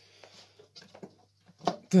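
Plastic base housing of a Tefal multicooker being pried off its metal outer shell by hand: a short scraping rustle, then a few light plastic clicks and creaks, with a sharper click near the end.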